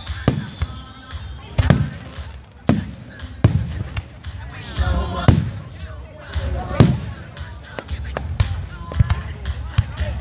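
Aerial fireworks shells bursting overhead: a string of about eight sharp bangs at uneven intervals of a second or so.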